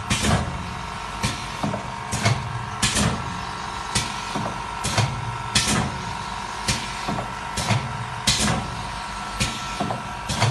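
Automatic liquid bag filling and packing machine running: its pneumatic cylinders and valves stroke with short clacks and puffs of air hiss, about once or twice a second, over a steady hum.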